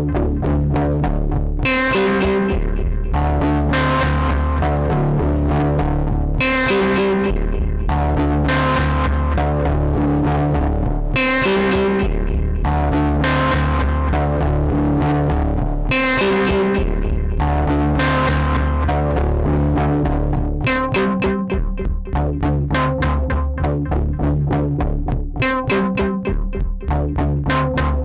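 Pioneer DJ Toraiz AS-1 monophonic analog synthesizer playing a looping, bass-heavy preset sequence, run through an Elektron Analog Heat. The sequence repeats in phrases of a few seconds, and its notes turn short and clipped about twenty seconds in.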